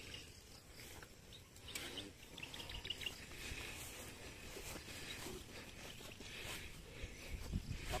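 Faint steady hiss of a pressurised stainless-steel knapsack sprayer spraying herbicide from its lance nozzle, with a few soft rustles.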